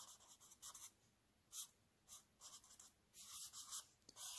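A black felt-tip pen drawing on squared notebook paper: faint, short strokes of the tip across the page at irregular intervals.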